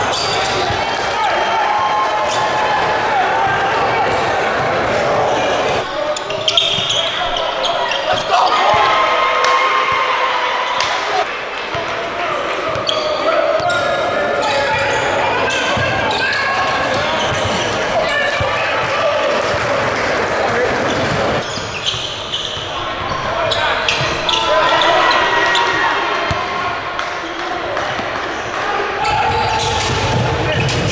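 Basketballs bouncing on a hardwood gym floor, repeated sharp knocks, among indistinct voices echoing in a large gym.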